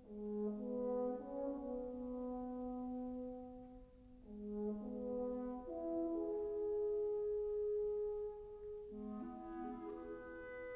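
French horn playing a slow solo line of held notes, moving between low notes in the first half, then climbing to a higher note held for about three seconds, and stepping back down near the end.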